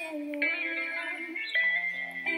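A woman singing held, sliding notes into a handheld microphone, with music under her voice.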